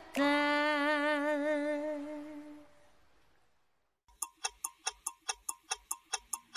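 A countertenor holds a final sung note with vibrato that fades away about two and a half seconds in. After a second of near silence, a quick clock-like ticking starts, about five ticks a second, from a news ident.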